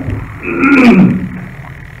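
A man's drawn-out, wordless hesitant vocal sound, an 'ehh' that falls in pitch, lasting under a second and starting about half a second in.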